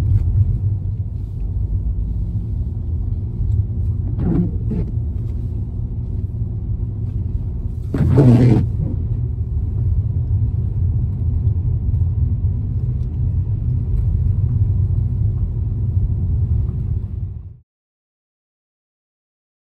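Car engine idling with a steady low rumble, with two brief louder sounds about four and eight seconds in. The sound cuts off just before the end.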